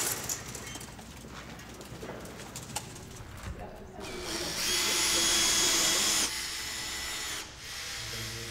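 Cordless drill/driver driving a screw into a wall. It starts about halfway in as a steady whine for about two seconds, then runs more quietly for about a second before stopping.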